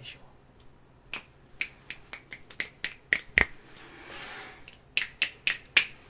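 Finger snaps close to the microphone: an uneven run of about a dozen sharp snaps, the loudest a little past the middle, broken by a short soft hiss before the last few.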